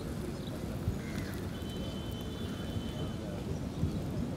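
Outdoor wind rumbling on the microphone, with two dull thumps of footballers' feet on grass, about a second in and near the end.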